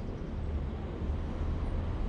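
Steady low rumble with an even background hiss, without separate clicks or strokes.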